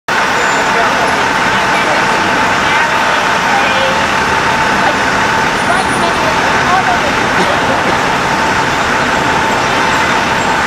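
Steady city street noise of traffic, with a constant high hum running under it and indistinct voices.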